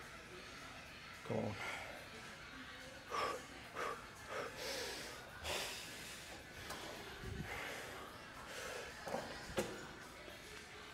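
A man breathing hard through a heavy set of leg extensions: a string of short, forceful exhales and snorts of exertion, with a lull and then two more sharp breaths near the end.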